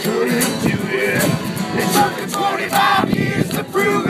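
Live acoustic band music in a country style: strummed guitar and other instruments playing between sung lines.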